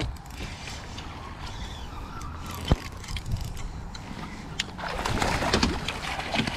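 A hooked smallmouth bass thrashing and splashing at the surface beside the boat as it is scooped into a landing net, a burst of splashing near the end. Before that there is a steady low rumble and a single sharp knock a little under three seconds in.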